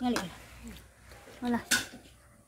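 Short, broken bits of a person's voice, a few brief syllables or murmurs, with a sharp hiss-like sound near the end.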